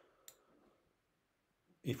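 A single computer-mouse click about a third of a second in, over faint room tone, then near quiet until a man's voice starts at the very end.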